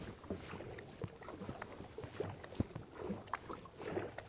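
Kayak paddle strokes in calm lake water: the blades dipping and pulling, with many small irregular drips and splashes from the blades and water moving along the hull.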